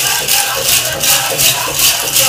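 Tin cones of a jingle dress rattling with each dance step, about three strokes a second, over powwow drum music.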